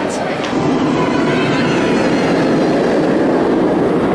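Shambhala roller coaster train running on its track: a steady loud rumbling rush that swells about half a second in.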